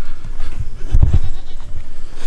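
Goats bleating in the background, with a low rumbling thump about a second in.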